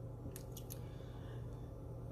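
A steady low hum with three faint, short clicks in quick succession about half a second in.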